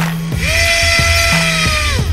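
Home-made micro brushless inrunner motor with a small propeller spinning up to a high, steady whine about a third of a second in, then winding down just before the end. Background music with a beat plays underneath.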